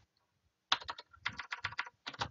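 Typing on a computer keyboard: after a short pause, a quick run of keystrokes starts a little under a second in.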